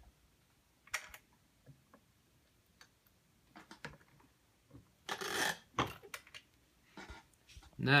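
Scattered small clicks and clacks of a turret reloading press being worked to seat a primer in a .357 Magnum case, with a short scraping rasp about five seconds in.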